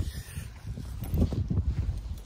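Wind buffeting the microphone during a bicycle ride: a low, uneven rumble that rises and falls.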